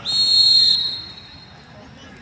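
Referee's pea whistle blown once in a football match: a loud, shrill blast of under a second that stops play, fading away soon after.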